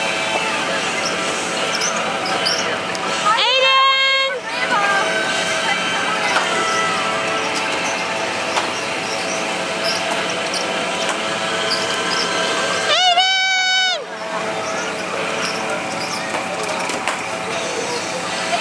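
Steady fairground din on a kiddie car carousel: many held tones and voices. About four seconds in and again about thirteen seconds in, a loud pitched call or tone about a second long rises at the start and drops at the end.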